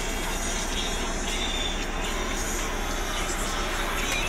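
Steady engine and running drone of a city bus, heard from inside the driver's cab.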